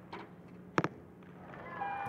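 A compound bow shot: one sharp, brief crack of the string's release about a second in.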